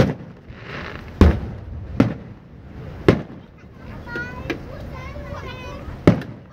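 Aerial fireworks shells bursting overhead: a series of sharp booms, four strong ones in the first three seconds and a weaker one later, each trailing off in an echo.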